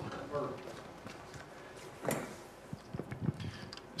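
Footsteps and a few short knocks in a quiet room, with a faint murmur of voices near the start.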